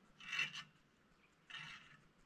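A bricklayer's steel hand tool scraping over mortar on brickwork: two short scrapes, the first about a third of a second in and the second near the end.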